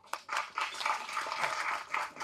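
Audience applauding with a dense patter of many hands clapping, softer than the speech around it.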